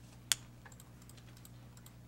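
Clicks on a laptop keyboard: one sharp click about a third of a second in, then a few fainter taps.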